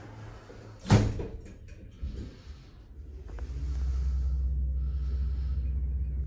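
Lift's sliding doors shut with a sharp bang about a second in, followed by a softer knock. The car then sets off upward, and a steady low hum of the lift in motion builds and holds.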